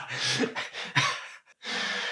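A man's laughter trailing off into breathy exhales, then a sharp intake of breath near the end.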